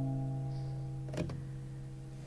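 Guitar's final chord ringing out and slowly fading away at the end of the song, with a single sharp click just past the middle.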